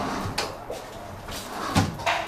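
Furniture and plastic-wrapped items being handled and moved: a knock about half a second in, some rustling, then a louder, heavier thump near the end.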